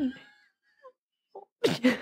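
A woman's laughter trailing off, then a fresh burst of breathy laughter near the end.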